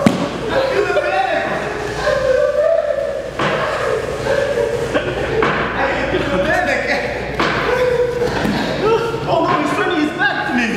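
Indistinct voices with thuds of bodies moving on the grappling mats, one sharp thud right at the start.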